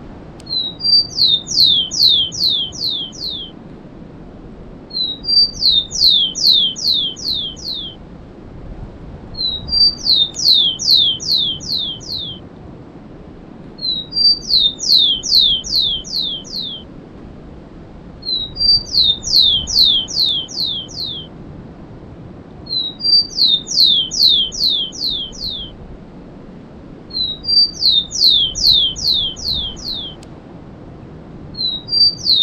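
Rufous-collared sparrow (tico-tico) singing the 'cemitério' song type, repeated about every four seconds. Each song is two short high notes followed by a run of about six quick whistles that each slide downward.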